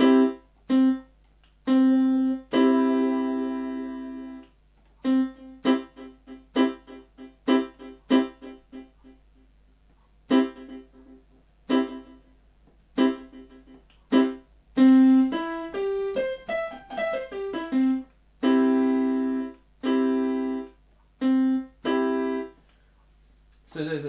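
Yamaha PSR-270 keyboard playing short and held chords through a series of its DSP effects, changing from one effect type to the next. Some chords cut off short, others ring on, and between about five and nine seconds in the notes come in fast repeats that fade away.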